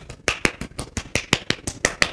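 A hand tapping quickly and evenly on the upper arm, about six light slaps a second: percussion massage of the triceps, meant to make the slack muscle contract with each blow.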